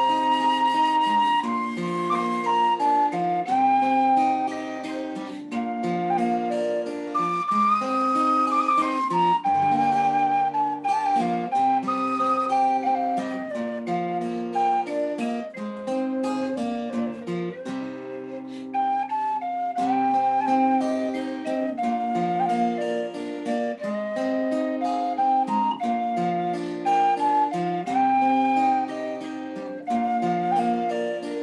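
An Irish tin whistle in B-flat playing a melody of held notes over acoustic guitar accompaniment.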